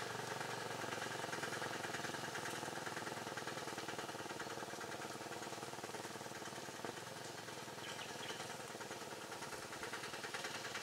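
Small vehicle engine idling steadily, with an even running pulse.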